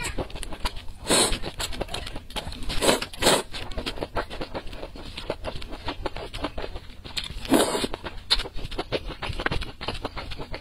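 Close-miked slurping of noodles, in short loud slurps about a second in, twice around three seconds and again past seven seconds, with wet chewing and small mouth clicks in between.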